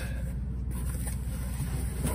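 A steady low engine-like rumble with no distinct knocks or clicks.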